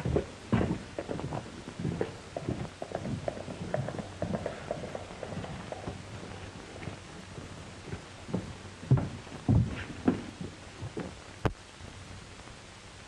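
Horse hooves clopping on a dirt street, mixed with footsteps, as irregular knocks that are busy at first, then thin out into a few heavier thumps. A faint steady hiss from the old film soundtrack runs underneath.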